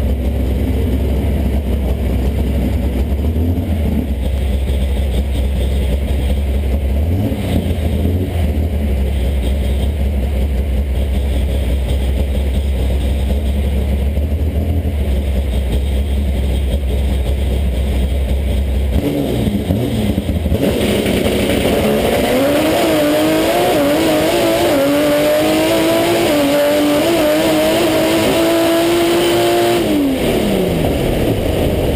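Chevrolet Caravan drag car's engine heard from inside the cockpit: a low, steady rumble as it stages, a rev about two-thirds of the way in, then launch into a full-throttle pass, the engine note climbing steadily with small wobbles for about eight seconds and falling away right at the end as the driver lifts.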